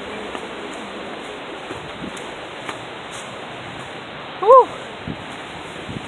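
Steady rushing of waterfall water, with faint steps on a gravel path. A brief voice, rising then falling in pitch, cuts in about four and a half seconds in and is the loudest sound.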